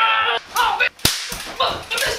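A high-pitched voice crying out in short wordless calls, with a single sharp crack about a second in.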